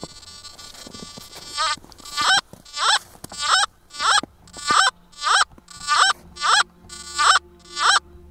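Nokta Makro Simplex+ metal detector in All Metal mode beeping repeatedly as a stone meteorite is swept past its coil: about eleven short tones, roughly 0.6 s apart, starting about two seconds in. Each beep bends up in pitch and falls back. This is the detector's response to the meteorite, which it reads as ID 00.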